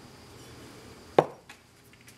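A single sharp knock about a second in, with a lighter click just after: a Porsche 944 piston being set down on a wooden workbench.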